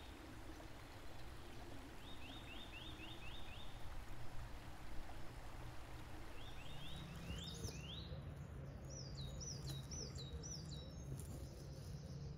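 Small songbirds singing: repeated short phrases of five or six quick rising notes, then a run of falling notes in the second half, over a low steady hum.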